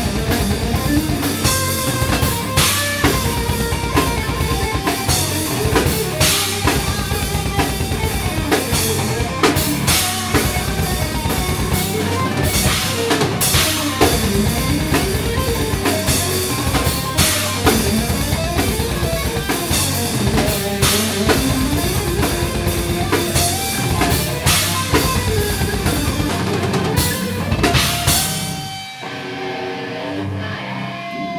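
Live heavy metal band playing: a fast, dense drum kit with bass drum under electric guitar and bass guitar. The song stops about a second and a half before the end, leaving a guitar note ringing.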